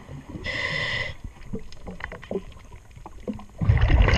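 A diver's scuba regulator heard underwater: a hissing inhalation with a thin whistle about half a second in, then a loud rush of exhaled bubbles near the end. Light clicks and scrapes from a scraper working the hull come in between.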